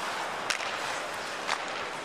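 Ice hockey arena sound: steady crowd noise over skates on the ice, with two sharp clacks of stick on puck about a second apart.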